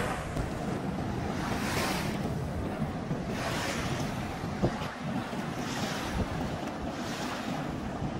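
Small river waves washing up a sandy bank, a hiss swelling and fading every second or two, over wind rumbling on the microphone. Two brief knocks come in the second half.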